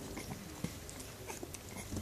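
Newborn puppies suckling from their mother: a steady run of small wet clicks and smacks, with a few short faint squeaks.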